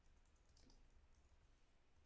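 Near silence: room tone with a few faint, quick clicks in the first second.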